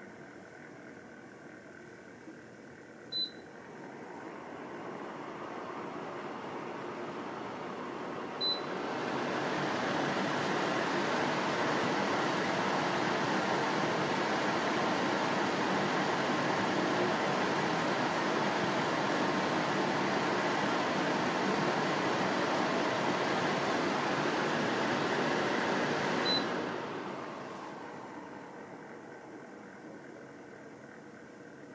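AMEIFU FXAP2W HEPA air purifier's fan running through its speed settings. A short beep from the touch panel about 3 seconds in is followed by the airflow rising, and a second beep at about 8 seconds brings it up to a loud, even whoosh. A third beep near the end drops it back, and the fan winds down.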